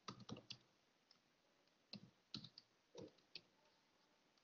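Faint, scattered clicks of a computer keyboard and mouse: a quick run of clicks at the start, then single clicks every half-second or so.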